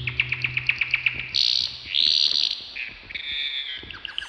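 Bird chirping in the intro of a trap track: a fast run of about nine chirps a second that fades over the first second, then four short, higher calls. A low bass note fades out in the first second.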